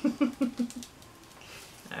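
A woman laughing: a quick run of about six short laughs, then a quiet stretch.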